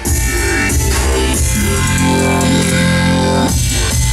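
Electronic music with a heavy, strong bass played through a Philips MMS6060F 2.1 speaker system (subwoofer and two satellite speakers) and picked up in the room, with a sustained synth swell in the middle.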